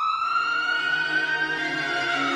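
A single siren-like wail that glides up, holds, and starts falling near the end, over low sustained music notes that come in about a second in.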